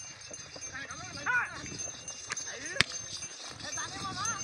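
Men shouting short, rising-and-falling calls to urge on a pair of running bullocks, over hoofbeats on dry packed ground. A single sharp snap comes near the three-second mark.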